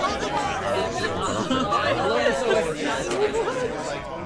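Many voices talking and laughing over one another at once, with no single speaker standing out.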